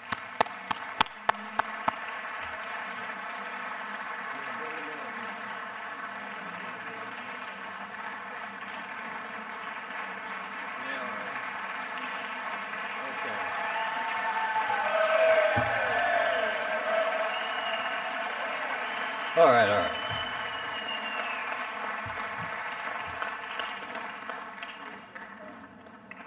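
Audience applause, with a few sharp single claps close to the microphone in the first two seconds. Voices rise out of the crowd around the middle, the loudest about three quarters of the way through.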